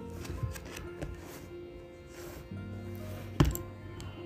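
Soft background music with steady held tones, over light handling sounds of small items on a bedspread. A single sharp click about three and a half seconds in, as a small cosmetic is set down.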